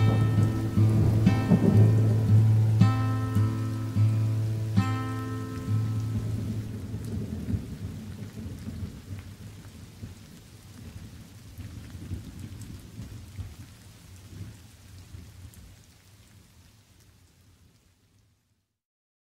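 Acoustic guitar playing its last few notes over a recording of rain and thunder. The guitar stops about six seconds in, and the rain goes on alone, slowly fading out.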